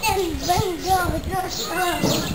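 Children's voices chattering and calling out, high and sing-song.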